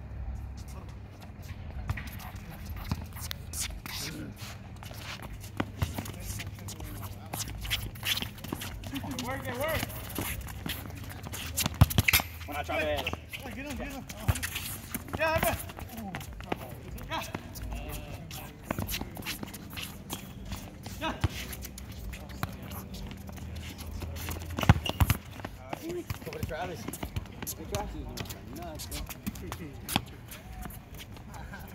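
Pickup soccer on a hard court: players' shouts and chatter over short knocks of a ball being kicked and shoes scuffing on the surface, with two loud sharp knocks about twelve seconds in and again about twenty-five seconds in.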